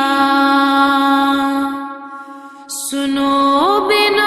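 Devotional singing: a voice holds one long note, fades away briefly about two seconds in, then comes back and slides smoothly up to a higher note near the end.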